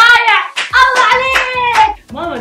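A woman laughing, then holding a long, high, sung-out vocal note, with a few sharp hand claps.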